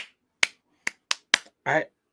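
Five short, sharp clicks made with a man's hands, quickly and unevenly spaced, followed by the start of a word of speech near the end.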